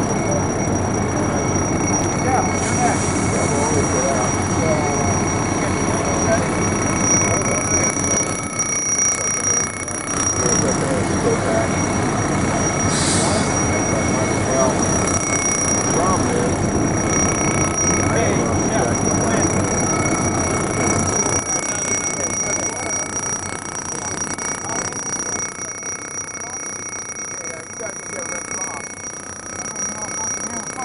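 Steady hiss of a fire hose nozzle spraying water over a firefighter in turnout gear for gross decontamination, over a steady mechanical drone with a thin high whine. The noise drops somewhat about two-thirds of the way through.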